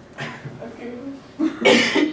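A person coughing, with loud coughs near the end.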